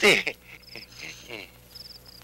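Crickets chirping in short, evenly repeated high trills, with the end of a man's word at the very start.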